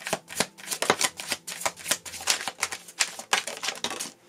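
Tarot deck being shuffled by hand: a fast, uneven run of sharp card clicks and flicks.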